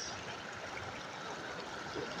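Small sea waves washing steadily in at the shoreline, an even rush of water with no single splash standing out.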